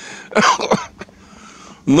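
A man coughs once to clear his throat, a short rough burst lasting about half a second.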